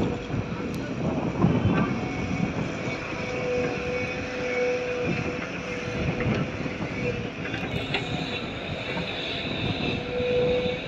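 Heavy diesel engines of a hydraulic excavator and a loaded tipper truck running steadily as the truck pulls away, with a faint whine that comes and goes.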